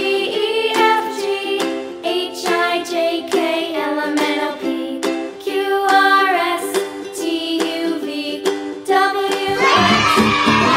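Background music with a melody over a steady beat of plucked notes; a fuller section with a deep bass comes in just before the end.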